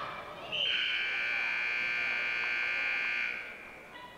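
Gym scoreboard timer buzzer sounding one steady buzz of nearly three seconds, starting about half a second in: the signal ending a period of a wrestling bout.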